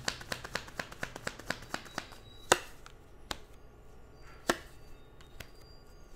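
A tarot deck being shuffled and handled: quick card flicks about four a second for the first two seconds, then a few separate, sharper card snaps, the loudest about two and a half seconds in.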